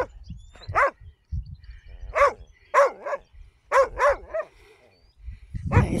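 A dog barking: about six short barks with pauses between them, the last three in quick succession about four seconds in.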